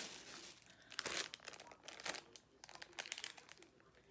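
Thin plastic packaging crinkling as it is handled: a fairly faint run of irregular crackles, heavier about one second and two seconds in.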